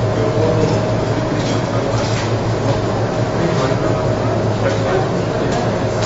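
Steady background hum and hiss of a room, with faint indistinct voices.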